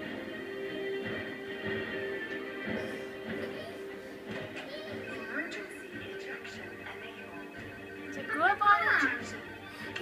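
A television playing a children's cartoon: background music with cartoon voices, and a louder burst of voices near the end.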